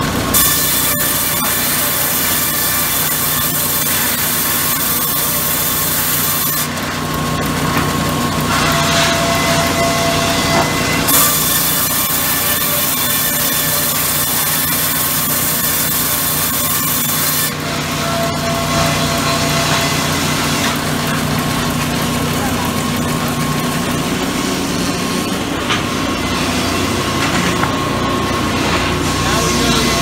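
Sawmill band saw running with a steady motor hum, twice cutting lengthwise through a teak log on the carriage. Each cut is a loud, high hiss lasting about six seconds, the first starting just after the beginning and the second about eleven seconds in.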